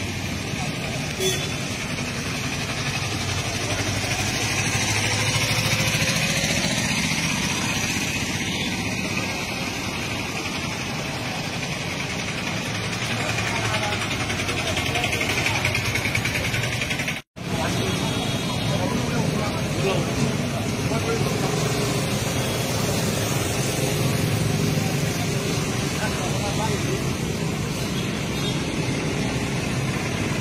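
Street traffic, cars and motorcycles passing, mixed with the indistinct voices of a gathered crowd.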